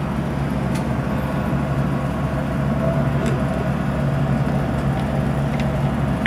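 Steady low mechanical hum running throughout, with a few faint light clicks.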